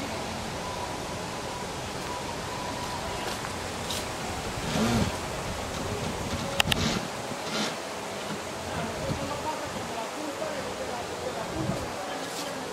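Outdoor background noise with faint voices of other people in the distance, plus a few bumps from the handheld camera and a sharp double click a little past the middle.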